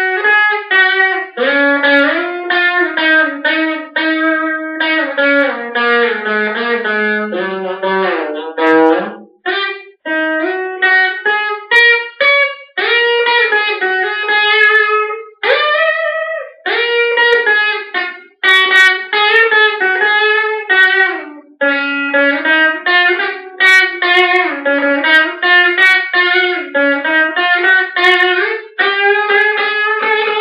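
Stratocaster-style electric guitar played solo: a single-note melody of sustained notes with string bends, broken by a few short pauses between phrases.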